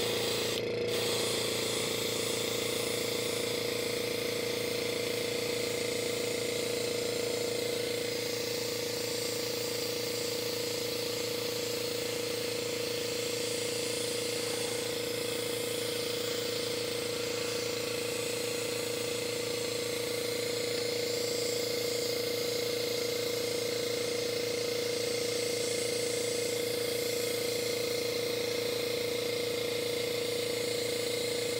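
Small airbrush compressor running steadily with a strong hum and rapid pulsing, under the hiss of an airbrush spraying thinned transparent red paint.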